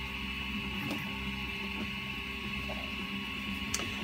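Steady background hum made of several held tones, with a couple of faint clicks from hollow 3D-printed plastic parts being handled, one about a second in and one near the end.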